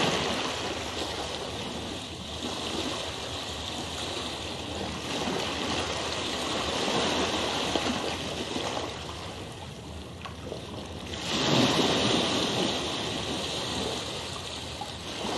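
A steady wash of rushing water, like a stream or surf, swelling and easing, with a louder surge late on.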